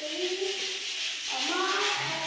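A voice singing long, gliding notes over a steady hiss.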